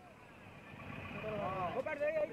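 Background noise of a busy street rises about half a second in, and then a person's voice starts talking over it.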